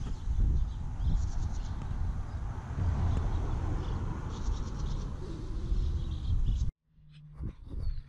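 Outdoor riverside ambience: a steady rushing noise with a heavy low rumble, and small birds chirping, mostly around the middle. It cuts off abruptly near the end.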